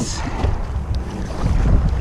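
Wind buffeting the microphone with a steady low rumble, over water moving around a plastic kayak.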